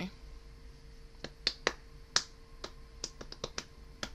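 About ten sharp, irregular clicks close to the microphone, bunching closer together near the end, over a faint steady hum.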